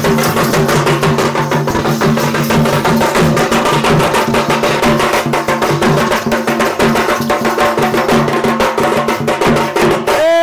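Folk dance drums beaten in a fast, steady rhythm, with a sustained low tone held underneath.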